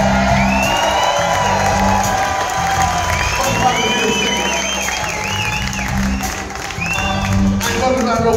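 Live soul band playing a steady groove with held low notes, the audience cheering over it.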